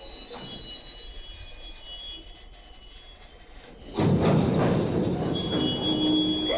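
Soft, faint background score, then about four seconds in a loud, steady rushing rumble sets in suddenly and keeps going: a train passing close by.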